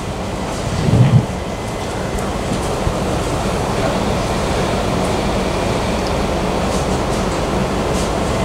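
Steady rushing noise of the shop's air conditioning or extractor fan, with a brief low hum about a second in.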